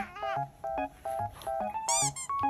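Light, bouncy background music of short plucked notes repeating in an even rhythm, with a brief high meow-like cry right at the start and another, higher one near the end.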